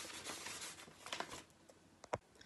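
A sheet of paper rustling and crackling as it is shaken and waved in the hands, dying away about a second and a half in.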